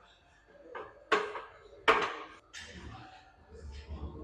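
Forceful breaths of a man straining through heavy barbell back squats: two loud sharp exhalations about a second apart, then quieter breaths.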